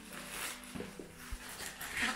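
Plastic packaging of a clothing parcel rustling and crinkling as it is opened by hand, with a few faint knocks.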